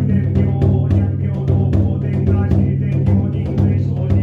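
Buddhist sutra chanting in a steady monotone, carried by a taiko drum struck about four times a second and the jingle of shakujō staff rings. The chant and the beat come in together suddenly just before the start.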